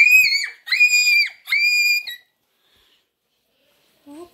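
A child's high-pitched screams, three short shrieks in quick succession, each about half a second long.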